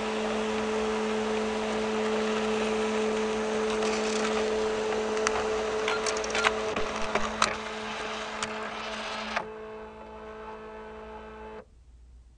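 A machine's steady hum with a low, even tone, broken by scattered sharp clicks in the middle. The hum drops away about nine and a half seconds in and cuts out almost entirely shortly before the end.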